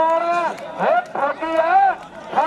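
A man speaking in drawn-out phrases that rise and fall in pitch: Punjabi kabaddi match commentary.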